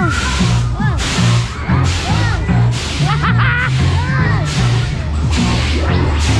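Loud fairground ride music with a heavy bass beat, broken by repeated rushes of wind over the microphone, each about half a second long, as the spinning Mexican Wave ride carries it round.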